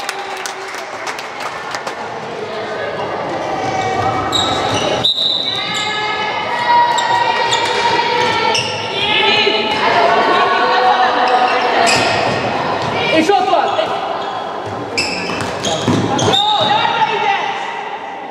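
A handball bouncing and knocking on a wooden sports-hall floor during play, with players and spectators calling out, echoing in a large hall.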